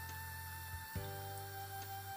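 Quiet background music of held, sustained notes, moving to a new chord about a second in.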